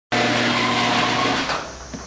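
2003 Chevy S10 pickup with an aftermarket Gibson exhaust running, a loud steady engine and exhaust note that drops much quieter to a low rumble about a second and a half in.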